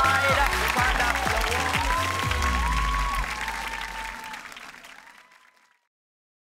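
Studio audience applauding and cheering over game-show closing music with a regular beat, the whole mix fading out over the last couple of seconds to silence.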